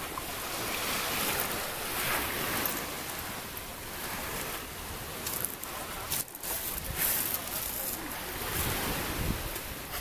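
Surf washing onto a pebble beach, swelling and ebbing, with wind buffeting the microphone and a few brief sharp clatters in the middle.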